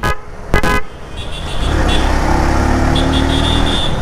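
A vehicle horn gives two short toots, about half a second apart. Then the Benelli motorcycle's engine and wind noise build into a loud, steady drone whose pitch rises slightly as the bike accelerates.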